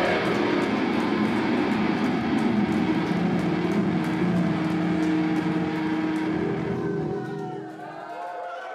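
Rock band playing live: distorted electric guitars and bass holding a loud closing chord, with rapid cymbal hits over it. The hits stop and the chord fades out near the end, as a few voices from the crowd come through.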